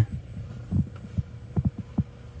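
Handling noise: a few soft, low thumps at irregular intervals over a faint steady hum, as heavy battery cables with crimped copper lugs are moved about.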